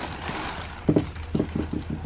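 Handling noises: a soft knock just under a second in, then a quick run of light taps and knocks over a low steady hum.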